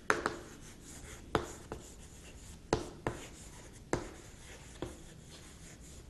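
Chalk writing on a chalkboard: quiet scratching of the chalk stick across the board, broken by several sharp taps as the chalk strikes the surface at the start of letters.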